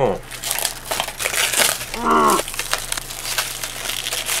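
Clear plastic packaging around a new motorcycle helmet shield crinkling and crackling in irregular bursts as it is pulled open by hand, with a short vocal sound about two seconds in.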